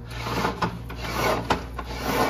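A fabric window roller shade rubbing and rasping as it is handled and raised. Several scraping strokes, with a sharp click about one and a half seconds in.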